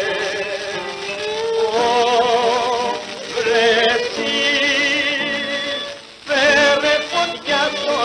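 A 1929 Greek rebetiko gramophone recording: a wavering, heavily ornamented melody line over accompaniment, with the dull, band-limited sound of an old 78 rpm disc. There is a brief break about six seconds in before the melody resumes.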